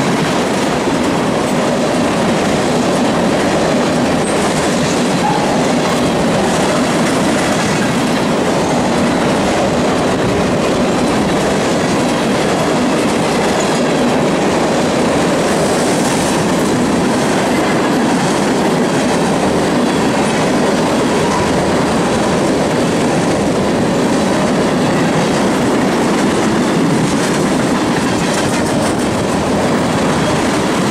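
Loaded tank cars of a freight train rolling past close by: a loud, steady noise of steel wheels on rail, with wheels clicking over the rail joints.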